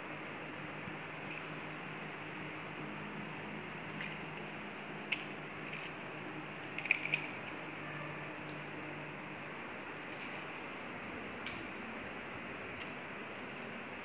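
Plastic drinking straws being handled and pressed onto a paper sheet, with a few short sharp clicks, one about five seconds in, a quick cluster around seven seconds and one more near the end, over a steady background hum.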